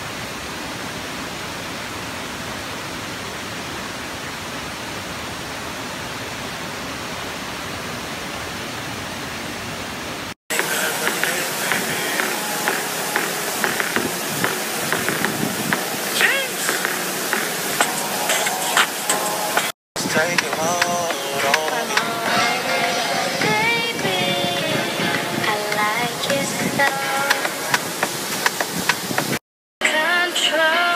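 Whiskeytown Falls running, a steady even rush of falling water for about ten seconds. It stops at an abrupt cut, and louder music with singing follows, broken twice by brief dropouts.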